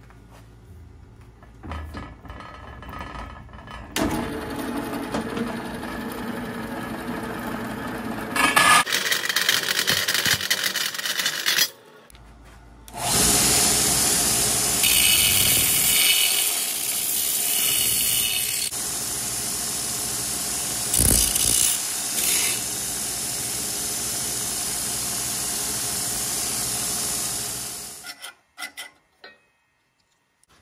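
A bandsaw cutting through quarter-inch-wall steel angle, its motor humming underneath, for several seconds. After a short break, a belt grinder grinds the cut end of the steel angle in a loud, steady rasp until it stops about two seconds before the end.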